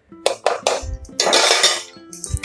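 Steel ladle stirring thick vegetable gravy in an aluminium pressure cooker, with a few knocks and scraping of metal against the pot.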